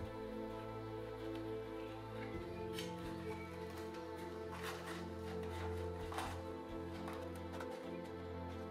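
Soft background music with steady held notes; the low notes change about two and a half seconds in.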